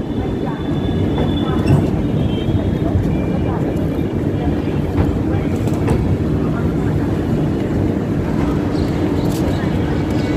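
An Indian Railways LHB passenger train rolling slowly into a station platform: a steady low rumble of wheels on track, with a few faint clicks.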